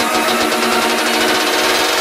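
Electro house music at a build-up: held synth chords under a fast, quickening drum roll, with the heavy kick drum falling back.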